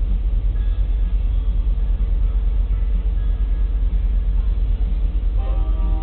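A low, steady rumble. About five seconds in, a BNSF diesel locomotive's air horn begins sounding a steady multi-note chord.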